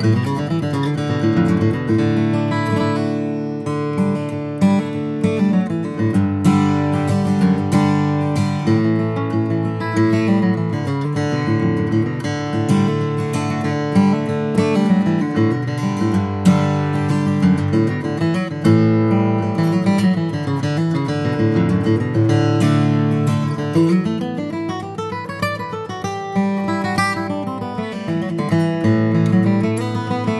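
Santa Cruz 1934 D dreadnought acoustic guitar, with Brazilian rosewood back and sides and an Adirondack spruce top, played solo. Notes and chords follow one another without a break, with a rising run of notes in the last quarter.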